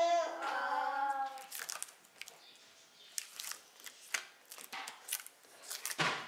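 A voice holds a sung or hummed vowel for about the first second and a half. After that comes pencil scratching on paper in short strokes, with small ticks and taps.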